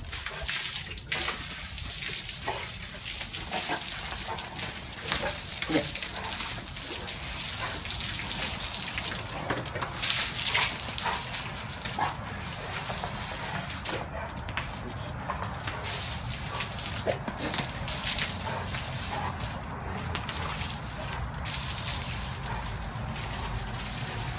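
Water from a garden hose, its end partly covered by a hand, spraying in a steady hiss and splashing. An American bulldog snaps and bites at the stream.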